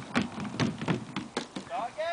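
Horse's hooves close to the microphone: a quick, uneven run of sharp knocks, about four a second.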